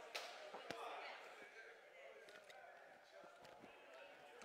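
Near silence in a hall, with faint background murmur and a few soft clicks and knocks in the first second and a half.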